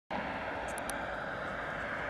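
Steady outdoor background noise, an even rumble and hiss, with a few faint high chirps about a second in.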